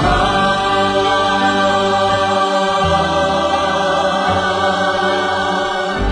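Choir singing with long held chords.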